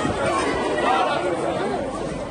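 People talking: overlapping chatter of several voices.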